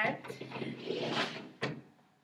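A CPR training manikin being moved on a folding tabletop: a scraping rustle for about a second and a half, then a single sharp knock.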